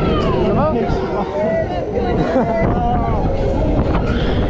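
Riders on a swinging fairground thrill ride shouting and shrieking, their voices sliding up and down in pitch, over heavy wind buffeting on the microphone.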